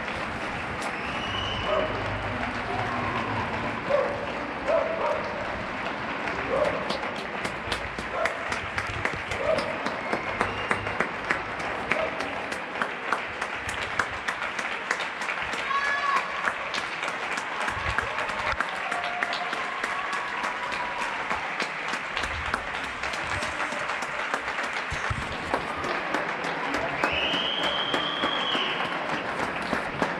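Many neighbours clapping from the surrounding balconies and windows: a steady, spread-out applause of countless hand claps, with voices calling out here and there.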